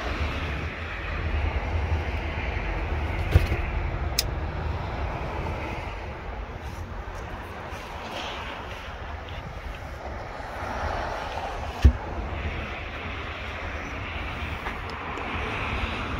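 Steady low outdoor rumble in a parking lot, with two sharp knocks, one a few seconds in and a louder one about twelve seconds in.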